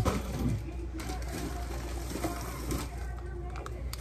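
Plastic packaging rustling and crinkling as a bagged item is picked up and handled, over a low steady hum.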